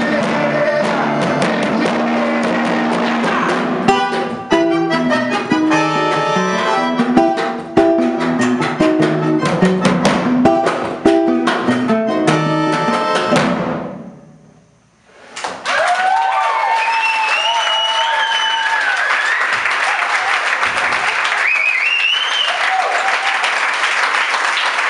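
Live band of accordion, nylon-string acoustic guitar and drum playing the last bars of a song, first held chords, then a run of strummed, rhythmic strokes that stops about fourteen seconds in. After a moment's quiet, the audience applauds with whistles.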